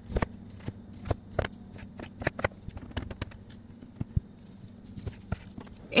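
A chef's knife cutting partly frozen chicken breast into small pieces, the blade knocking on a plastic cutting board in about a dozen irregular taps.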